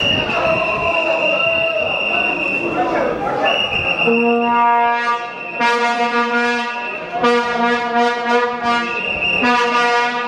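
Crowd chatter in a stadium with a steady high whistle-like tone. About four seconds in, a brass-like horn in the stands starts sounding long held notes, each blast a second or more long with short breaks between them, and keeps going to the end.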